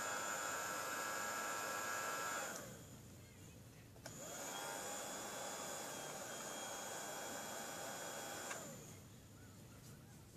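Small nail polish dryer's fan motor running steadily. It cuts off about two and a half seconds in, starts again with a click about a second and a half later, and stops near the end.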